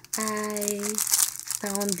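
Clear plastic packaging crinkling as packets of gift bags are handled, with a woman's voice holding a long drawn-out vowel for about a second at the start and again near the end.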